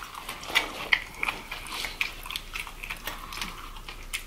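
Close-miked chewing and biting of fried chicken: a steady run of small, irregular wet smacks and clicks from mouths eating.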